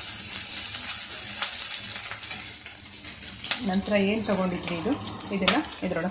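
Sliced onions and green chillies sizzling steadily in oil in a wok, with a steel spoon stirring and scraping against the pan, giving a few sharp taps.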